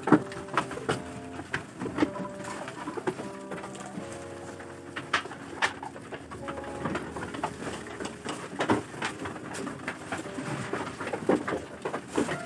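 Low, steady cooing calls repeating through the whole stretch, over scattered knocks, clatters and rustles from goats crowding and feeding at a bamboo feed rail.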